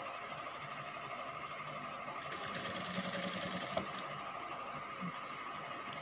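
Industrial sewing machine's motor humming steadily while it stands idle, as fabric is arranged under the presser foot. From about two to four seconds in, a denser rustling comes from the fabric being handled.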